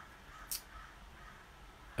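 Faint cawing of a crow, a few short calls, with a brief sharp click about half a second in.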